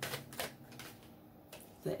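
A few sharp clicks of tarot cards being handled, bunched in the first second, over a low steady hum that stops about half a second in.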